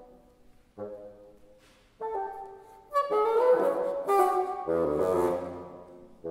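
Solo bassoon playing unaccompanied: short separate notes with pauses between them, then a louder phrase from about three seconds in that ends on a low note.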